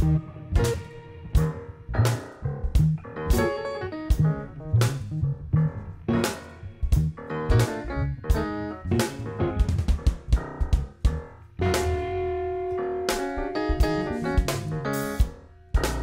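A live instrumental jazz/hip-hop quartet playing electric guitar, keys, electric bass and drum kit over a steady, laid-back beat of about two drum hits a second. From about twelve seconds in, a chord is held for a few seconds.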